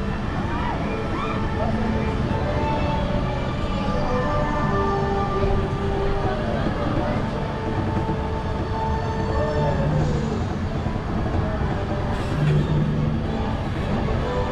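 Monorail car running steadily along its elevated track: a constant rumble and hum of the moving car, with faint voices and a few held tones in the background.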